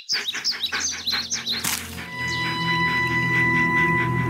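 A quick run of small bird chirps, about six a second, for the first two seconds. Then background music takes over with long held notes.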